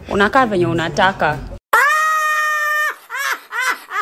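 Brief talk, then an abrupt cut to an inserted meme clip: an elderly woman's long, high-pitched scream held steady for about a second, followed by several short shrieking cries.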